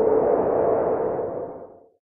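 Logo-intro sound effect: a swelling whoosh with a steady hum-like tone running through it, fading away shortly before the end.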